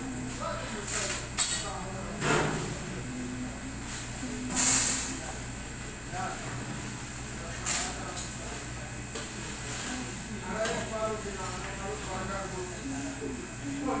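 Indistinct talk over a steady low hum, broken by several short hissing bursts; the longest and loudest comes about halfway through.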